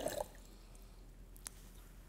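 The last of a stream of water pouring from a small steel pot into a plastic jug, trickling off about a quarter second in. After that it is quiet, apart from a single faint click about halfway through.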